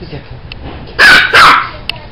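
A dog barks twice in quick succession, about a second in.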